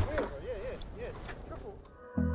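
A person whistling a short, wavering tune, the pitch swooping up and down several times.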